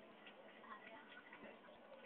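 Near silence, with a few faint scattered ticks.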